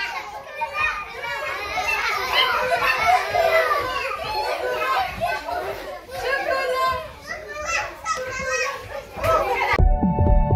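A crowd of young children playing, many high voices calling out and chattering at once, overlapping without a break. Music cuts in just at the end.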